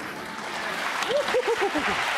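Studio audience applauding, with a few short voices calling out in the second half.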